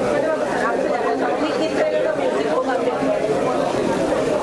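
Voices talking over one another: general chatter of people in a hall.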